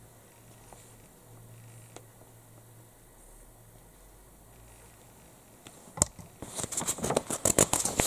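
Faint steady hum of a quiet room for about six seconds. Then a sharp tap and a crackling rustle as a paper instruction leaflet is handled and folded over near the end.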